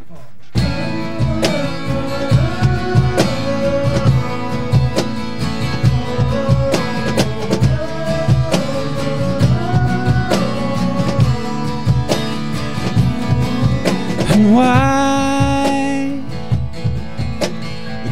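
Live acoustic band intro: acoustic guitar strummed in a steady rhythm under a moving melody line, starting about half a second in. Near the end a male voice slides up into one long held sung note.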